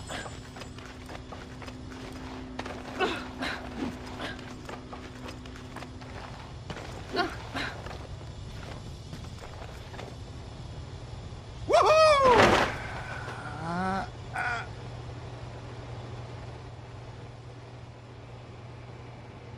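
Cartoon sound effects over a steady low hum: scattered small knocks and clicks, then about twelve seconds in a loud pitched sound that rises and falls, followed by a few shorter gliding calls.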